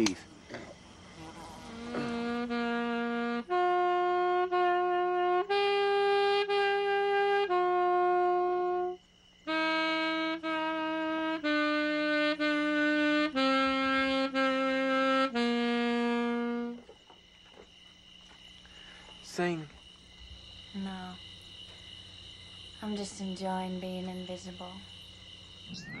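Music: a wind instrument plays a slow melody of long held notes, each note sounded twice, first rising and then stepping down. It fades out at about 17 seconds, leaving a faint steady high tone.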